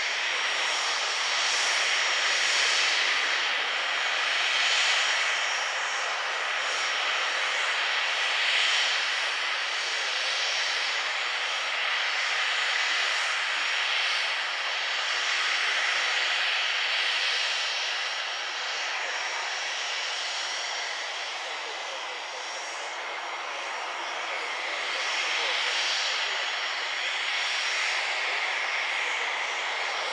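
Cirrus SF50 Vision Jet's single turbofan engine running at idle on the ground: a steady rushing hiss with a faint high whine, swelling and easing slowly.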